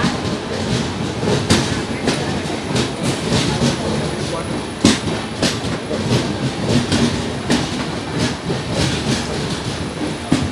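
Express train coaches rolling past along a platform: a steady rumble of the running train, with the wheels clicking over rail joints about twice a second.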